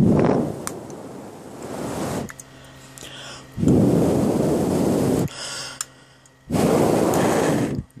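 A person blowing three long, hard breaths onto hot, arc-melted light-bulb glass, heard as gusts of breath on the microphone, with a few faint clicks between them from the glass cracking as it cools.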